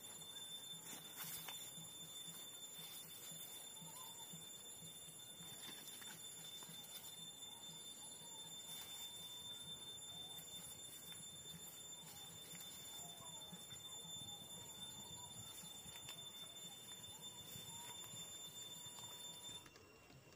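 Faint outdoor background: a steady high-pitched whine with a few faint chirps. The whine stops suddenly near the end.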